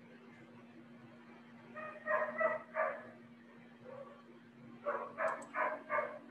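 A dog barking: a run of three short barks about two seconds in, then five more near the end, over a steady low hum.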